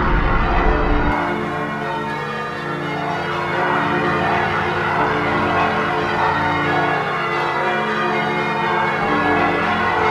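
Many bell-like tones ringing at once in a dense, overlapping wash. A low rumble under them drops out about a second in.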